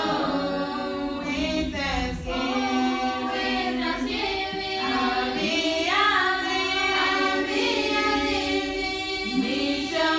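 A choir singing unaccompanied, several voices holding long notes together.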